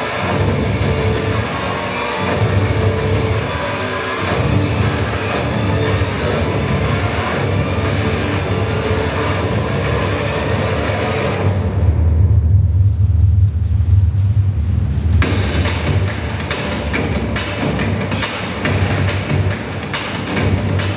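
Loud music soundtrack of a car promotional film, with a heavy bass. A little past the middle, everything but a deep bass rumble drops out for about three seconds, then the full music comes back.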